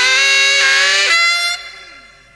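Horn section with saxophone, in a late-1960s British jazz-rock blues recording, holding a loud sustained chord. It cuts off about a second in and dies away to a quiet tail.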